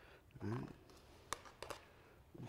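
A few light clicks of a metal spoon against a stainless steel mixing bowl as diced onions are spooned onto diced beets: one sharper click, then two fainter ones close together.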